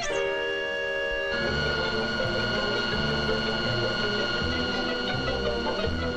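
Orchestral cartoon score: a full held chord, then about a second in a change to long sustained high notes over a low bass line that moves in repeated steps.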